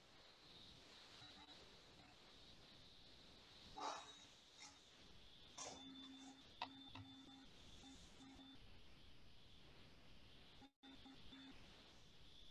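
Near silence: faint room hiss with a few soft knocks and brief faint tones around the middle, and the sound cutting out completely for a moment near the end.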